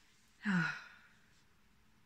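A person's short voiced sigh, dropping in pitch, about half a second in.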